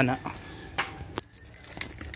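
Car keys jingling with a few sharp clicks about a second in, as the ignition key is handled before the engine is started.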